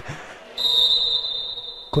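A steady high-pitched tone, starting about half a second in and holding at one pitch for well over a second, over faint hall noise.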